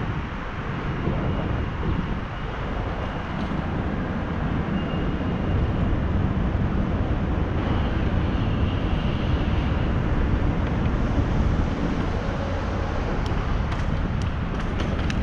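Wind rushing over the microphone of an action camera riding on a moving bicycle, a steady low rumble.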